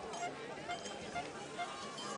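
Faint outdoor trackside sound of a cross-country ski race: a low, even hiss with a few faint distant voices.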